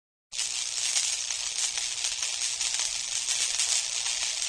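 A steady, high hiss of noise that starts abruptly just after the beginning and holds at an even level.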